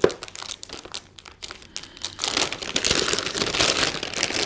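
Metallized anti-static bag crinkling as it is handled and pulled open. A few light rustles at first, then dense, louder crinkling from a little past halfway.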